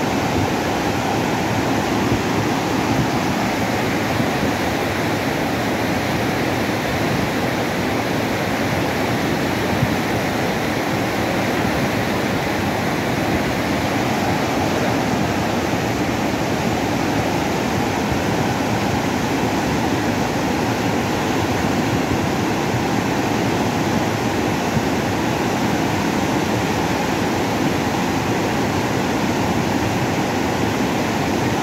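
A river in flood, thick with mud, rushing in a loud, steady torrent.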